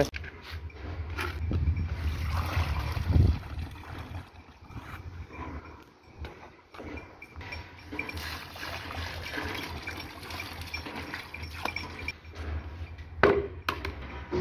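Water poured from a plastic tub into an earthenware drinking pot, trickling and splashing, after a few seconds of handling noise; a sharp knock near the end.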